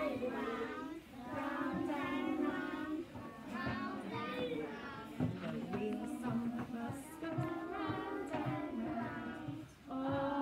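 A group of young children singing a nursery rhyme together in held notes, phrase by phrase, with short breaks between lines.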